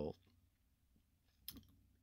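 Near silence with faint specks of handling noise and one sharp click about a second and a half in, just before speech resumes.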